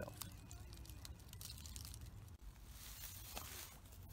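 Quiet outdoor background: a low steady rumble with faint, scattered crackles and ticks, like dry leaves and twigs being brushed.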